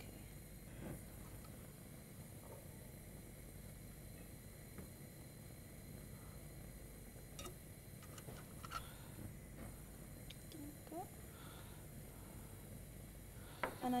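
Quiet room tone with a steady faint hum, broken by a few soft clicks from a glass bottle and a plastic petri dish being handled, around the middle.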